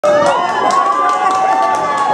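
A crowd with many children's voices shouting and calling out at once, several high voices overlapping.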